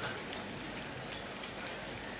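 Steady background hiss of a marquee's room tone, with a few faint ticks.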